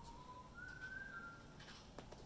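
Faint whistling: a single slowly falling note that fades about half a second in, then a shorter, higher note that steps down slightly before stopping.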